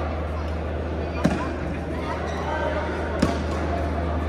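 Badminton rackets striking a shuttlecock in a rally: two sharp cracks about two seconds apart, over the steady hum and voices of a large hall.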